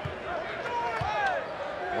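Basketball dribbled on a hardwood court, three low thumps about a second apart, over the steady murmur of an arena crowd.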